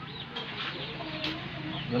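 Chickens clucking, with many short high chirps repeating throughout.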